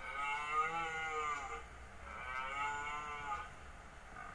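Two long lowing calls from a large hoofed animal, each rising and then falling in pitch; the second starts about two seconds in.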